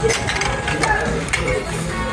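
Ceramic saucers (Enoch Wedgwood 'Countryside') clinking lightly against each other as one is lifted from its stack, a few short clicks, with music playing in the background.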